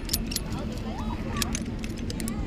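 Metal harness hardware and carabiners clinking in a quick series of sharp clicks as a free-fall rope rig is handled and unclipped.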